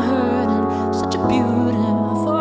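Slow dark pop ballad played live: a male voice sings held, wavering notes over steady sustained chords.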